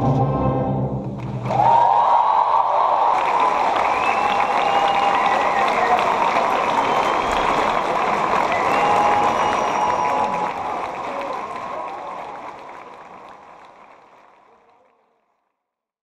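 An ensemble's final held chord stops about a second and a half in, and a large audience breaks into applause with cheers, which fades out over the last few seconds.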